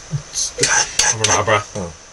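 A man beatboxing: mouth-made kick-drum thumps about twice a second alternating with hissing hi-hat sounds, with voiced bass notes in the second half, cut off suddenly at the end.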